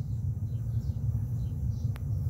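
A steady low rumble that wavers in loudness, with a single sharp click near the end.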